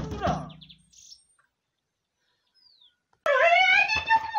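A short burst of voice at the start, then a quiet stretch with a faint bird chirp, and about three seconds in a loud, high-pitched, drawn-out human cry starts abruptly and holds.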